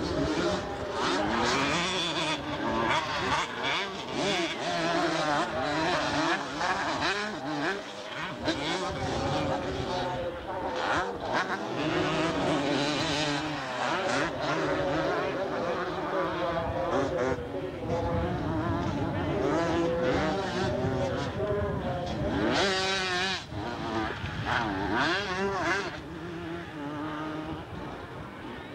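Several 125cc two-stroke motocross bikes racing, their engines revving up and falling away over and over and overlapping one another, a little quieter near the end.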